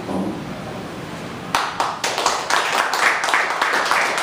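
Audience applause breaking out suddenly about a second and a half in, marking the end of a poem reading.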